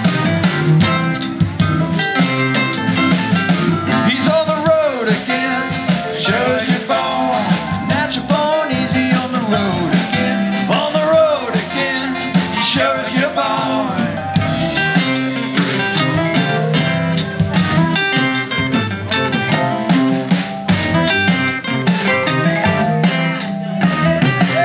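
Live acoustic blues band playing an instrumental break: two strummed acoustic guitars over electric bass, with a lead line of notes that bend up and down.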